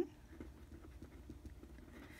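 Felt-tip pen writing on paper: faint, irregular little taps and scratches of the pen strokes over a low steady hum.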